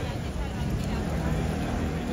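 Busy street ambience: a steady low traffic rumble with indistinct voices of onlookers.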